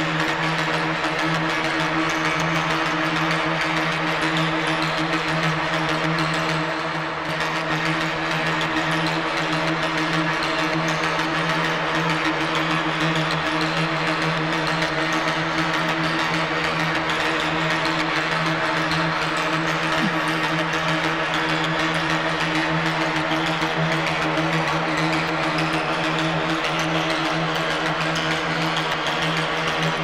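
Nebula Clouds Synthesizer, a Reaktor software synth, playing a sustained drone: a low chord of steady held tones under a bright, hissing wash of sound, at an even level throughout.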